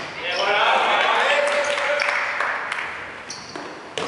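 Dodgeball players shouting and calling out over one another in a reverberant sports hall, with a few sharp knocks of a ball on the hard court in the second half.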